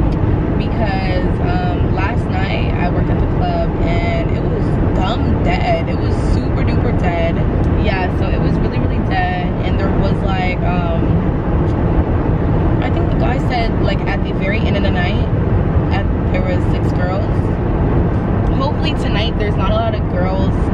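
A woman talking inside a car's cabin while it drives, over a steady low rumble of road and engine noise.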